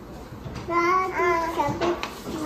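A toddler's high-pitched, wordless sing-song voice starts partway in and carries on for about a second in smooth, held notes.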